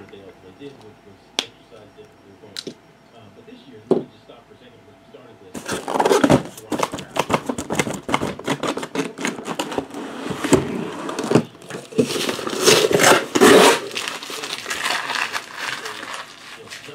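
Cardboard shipping case being handled and boxes of trading cards slid out of it: rustling, scraping and sharp knocks, busiest from about six seconds in, with only a few isolated clicks before that.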